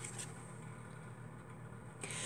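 Faint handling of a paper cutout as it is lifted and set down on a sheet of paper, over a low steady room hum.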